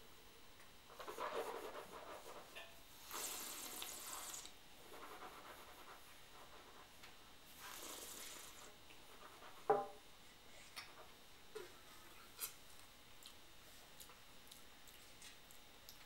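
Faint mouth and breath noises of a person tasting red wine: a sip, then breathy slurps and exhales as air is drawn through the wine, in three bursts over the first nine seconds. A sharp click follows near ten seconds, with a few light ticks after it.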